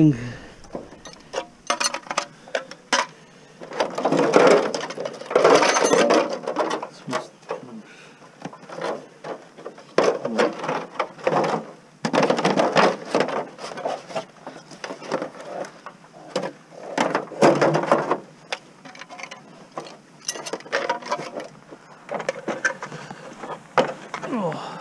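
An aluminum extrusion being pulled apart by hand and stripped of its plastic and rubber trim, making irregular scraping and knocking with sharp clicks.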